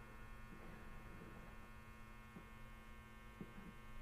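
Faint, steady electrical mains hum, a buzz of many evenly spaced tones, with a few soft ticks.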